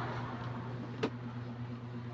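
Low steady hum in the background, with a single light click about a second in as the wires are handled and twisted together by hand at the junction box.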